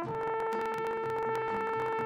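Trumpet holding one long, steady note in a solo, over a soft backing of bass and light rhythmic ticking from the band.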